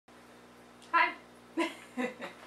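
A woman's voice making two short wordless sounds, about half a second apart.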